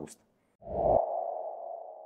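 Transition sound effect for a title card: a low hit about half a second in, followed by a steady, sonar-like mid-pitched tone that slowly fades.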